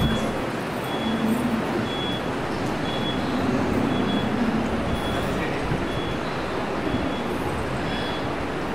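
Steady rushing background noise with a short, high-pitched beep repeating about once a second.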